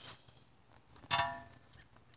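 A single sharp metallic clink about a second in, ringing briefly as it fades: loose brake hardware, the caliper bracket or its bolts, knocked or set down.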